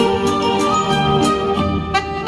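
Saxophone playing a slow melody over a backing accompaniment, with long sustained notes.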